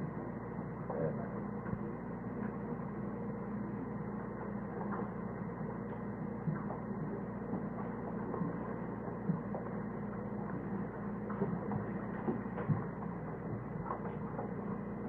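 Steady hum and hiss of an old, muffled church service recording, with scattered faint knocks and shuffles of a congregation moving about.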